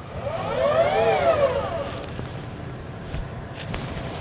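Celestron Origin smart telescope mount's motors slewing, very loud: a whine that climbs in pitch and falls back over about two seconds, then a quieter steady running sound.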